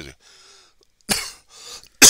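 A man coughing into his hand: a short cough a little past a second in, then a harder, louder cough starting right at the end.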